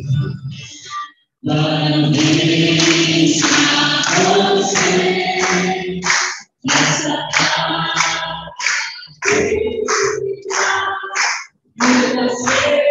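Church congregation singing together and clapping along in rhythm. The sound cuts out briefly three times, as over a video call.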